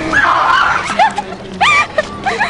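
A man screaming with excitement: a loud shriek, then two short rising squeals about a second in and near the end.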